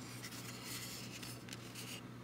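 Faint rubbing and handling noise of fingers turning a styrene plastic model-kit cockpit tub, over a low steady hum.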